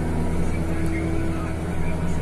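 Engine of a Jacto Uniport 3030 self-propelled crop sprayer running steadily at working revs under load, heard from inside the cab as a constant low drone with a thin steady hum above it.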